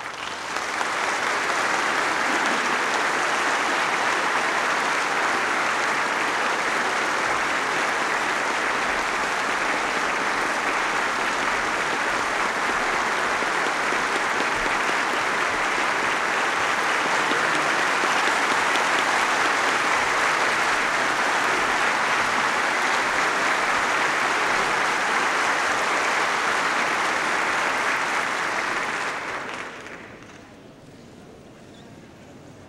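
A large indoor audience applauding steadily, swelling up within the first second and dying away near the end, as the President is welcomed.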